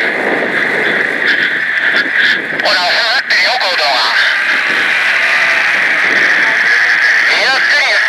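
A person's voice heard briefly about three seconds in and again near the end, over a steady high hiss.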